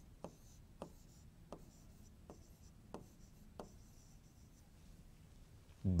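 A pen writing a word on a board: faint, short taps as the pen strokes touch the surface, about six of them spaced roughly two-thirds of a second apart, stopping a little after halfway.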